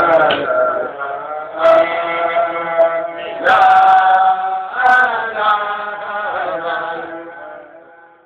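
Male voices chanting a Sufi dhikr (zikr) in long held phrases, fading near the end.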